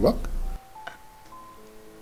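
Background film-score music: a low bass bed stops about half a second in, leaving a few soft, sustained bell-like notes that enter one after another at different pitches.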